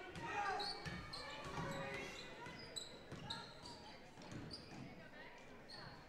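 A basketball being dribbled on a wooden gym floor, with short high sneaker squeaks and faint crowd chatter echoing in the gym.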